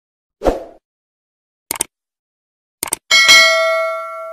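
Stock subscribe-button sound effects: a short low hit, then two quick clicks, then a bright bell ding near the end that rings on and slowly fades.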